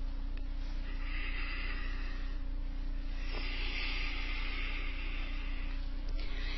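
Quiet room tone with a steady low electrical hum, overlaid by two soft stretches of airy hiss, one about a second in and a longer one from about three seconds in.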